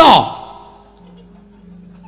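A man's voice ends a phrase with a steep downward glide in pitch, like a drawn-out sigh, then fades. A faint low steady tone follows.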